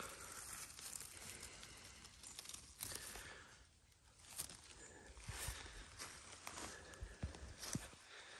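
Faint rustling and crackling of dry grass and dead leaves being parted by hand, with a few small clicks; it fades almost to nothing for a moment about four seconds in.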